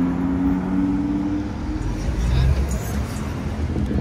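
Audi R8 Spyder's V10 engine pulling away. A steady engine note rises slightly in pitch, then fades after about a second and a half.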